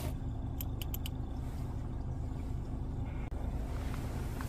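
Steady low drone of a fishing boat's motor running at idle, with a few faint light clicks just under a second in.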